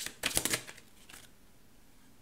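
A tarot deck being shuffled by hand: a brief, rapid flutter of card clicks in the first half-second.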